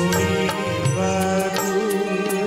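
A man singing an Odia devotional song, a Jagannath bhajan, into a handheld microphone, with instrumental accompaniment behind his held, wavering notes.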